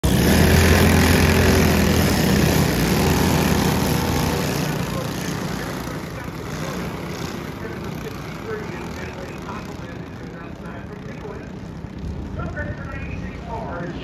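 A pack of racing karts' small engines running hard as they pass close, loudest for the first few seconds, then fading as the karts pull away around the track.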